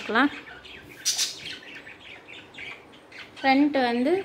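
A bird squawking: one short call just as it begins and two quick calls near the end. In between, soft rustling of cloth being smoothed and handled on a table.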